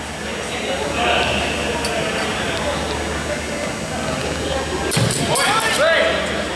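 Murmur of voices in a large hall, then about five seconds in a quick flurry of sharp clicks and a thud as longswords clash in an exchange, followed by a voice calling out.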